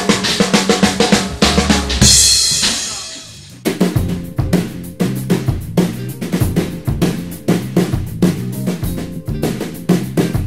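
Drum kit played: a rapid fill of hits, a cymbal crash about two seconds in that rings out and fades, then a steady groove from about four seconds in.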